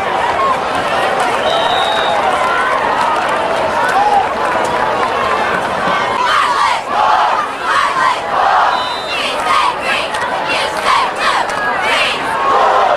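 High school football crowd: many voices shouting and calling out over a steady din, with more and louder shouts in the second half.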